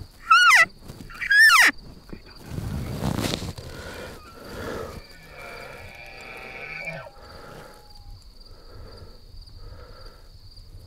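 Two short, loud, high-pitched elk mews about a second apart, each sliding sharply down in pitch at the end. A fainter, drawn-out steady call follows about five and a half seconds in.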